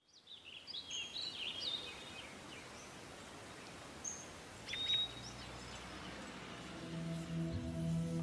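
Small birds chirping over a steady outdoor hiss, with a quick run of chirps in the first two seconds and another call near the middle. A low sustained musical drone fades in during the last second or so.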